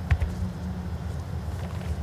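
Steady low hum of the indoor bowls hall, with a short knock about a tenth of a second in as the bowl is released and lands on the carpet rink.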